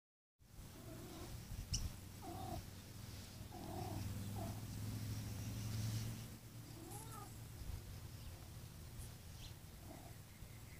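Domestic cats meowing: about five short meows over the first seven seconds, the last one rising and falling. A sharp click comes near two seconds in, and a low steady drone runs through the middle.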